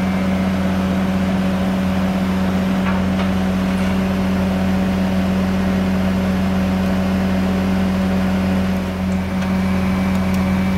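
Bobcat S650 skid-steer loader's diesel engine running steadily at a constant speed, without revving, heard from inside the cab.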